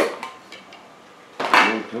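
A hard object set down with one sharp clatter that rings briefly, followed by a few light clicks.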